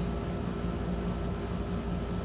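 Steady background hum and hiss of room noise, with a faint low rumble and a few steady humming tones underneath.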